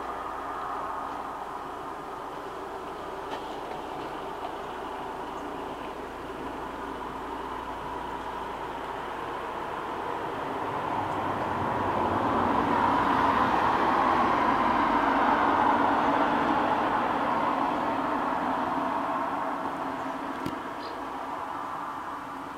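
A road vehicle passing by, its noise swelling over several seconds to a peak a little past the middle and fading again towards the end, over a steady background hum.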